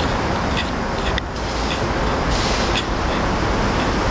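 Steady city road traffic noise.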